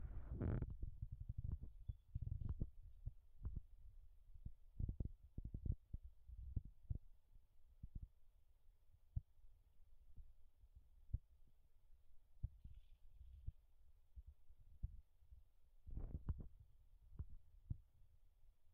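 Faint, irregular low thumps and knocks, busiest near the start and again near the end: handling noise from a mobile phone held by hand against a telescope eyepiece.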